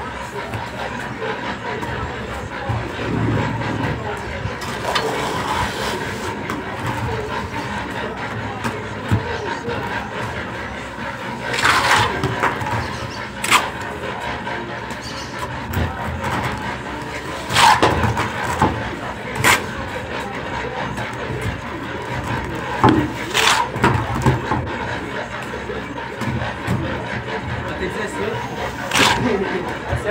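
Indistinct voices over a steady background hubbub, broken by about six sharp knocks or clanks in the second half.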